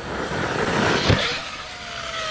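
ARRMA Kraton V2 RC monster truck, a Hobbywing Max6 brushless system on board, driving hard over gravel: a rush of tyre and gravel noise builds to a thump about a second in. Then a thin electric motor whine slides slowly down in pitch as the truck flies through the air.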